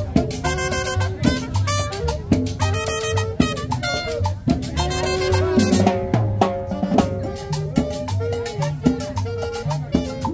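Live salsa band playing: horn chords over drums and percussion with a steady dance beat.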